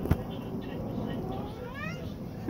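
A sharp knock just after the start, then a cat's short rising meow near the end.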